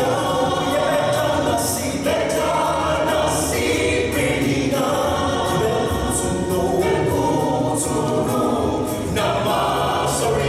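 A mixed group of men's and women's voices singing a gospel song in harmony through microphones, holding chords that change every couple of seconds.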